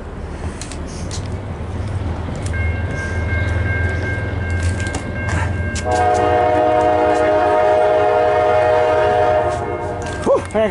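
Approaching CSX freight locomotive, its engine rumble building as it nears, then about six seconds in it sounds a long, steady blast on its multi-chime air horn.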